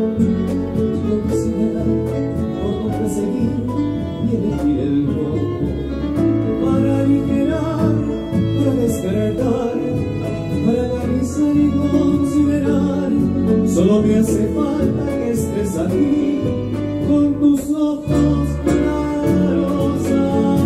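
Live acoustic band music: a violin playing a melodic line over double bass and cajón.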